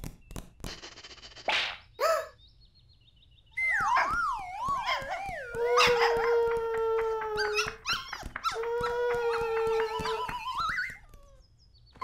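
A cartoon dog's howl, voiced by a person. After a few short clicks, it wavers and slides downward, then gives two long held howls, the second rising at its end.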